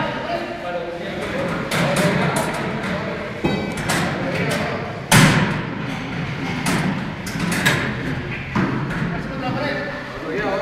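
A string of irregular hard bangs and thuds, about eight or nine, the loudest about five seconds in, over indistinct voices.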